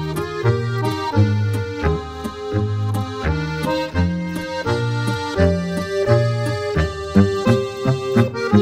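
Instrumental Bavarian folk dance music, a Boarischer, with a steady rhythmic bass under the melody and chords.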